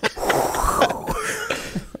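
Breathy, mostly unpitched laughter, loudest in the first second and tapering off toward the end.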